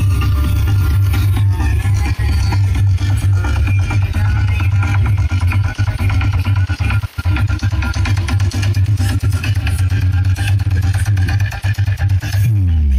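Electronic dance music played loud through a truck-mounted stack of big speaker cabinets, dominated by heavy bass. The sound cuts out briefly about seven seconds in.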